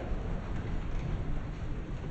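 A roomful of people sitting down on wooden benches at once: a steady, low rumbling shuffle of bodies and seats settling.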